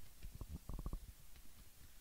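Handling noise on a handheld microphone: a few soft, low knocks, with a quick run of them just before the middle.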